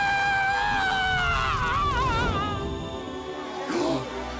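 A long, high scream from a cartoon character, held for about two seconds, slowly sinking in pitch and then wavering as it fades, over background music.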